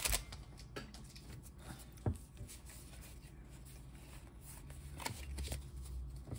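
Pokémon trading cards being handled and slid against one another, with a few short clicks and taps: one at the start, one about two seconds in and a cluster about five seconds in.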